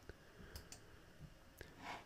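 Near silence with a few faint computer mouse clicks as a query is run.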